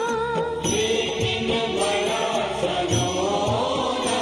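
Devotional chanting with music: one voice sings a wavering, ornamented line over regular drum beats and bright hand cymbals.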